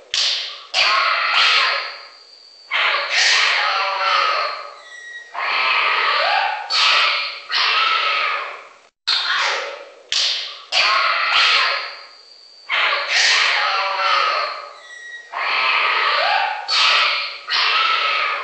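Exotic animal calls and squawks in a run of sudden bursts, each fading away within a second or two. The same sequence repeats about every ten seconds, like a loop.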